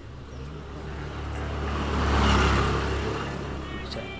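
A road vehicle passing by: its sound swells to a peak a little after two seconds in, then fades away.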